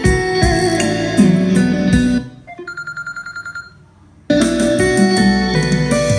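A music track played loud through a pair of KP-6012 12-inch full-range karaoke speakers, fed straight from a power amplifier with built-in karaoke effects. About two seconds in, the music falls away to a soft, quickly repeating high note for about two seconds. Then the full music with its bass comes back in.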